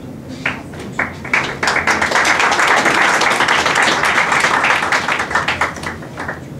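Audience applauding: a few scattered claps about half a second in, swelling into full applause by about a second and a half, then dying away near the end.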